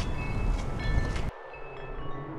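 Outdoor ambience of wind rumbling on the microphone with light chiming tones, cut off abruptly about a second in. A faint, low sustained musical tone follows.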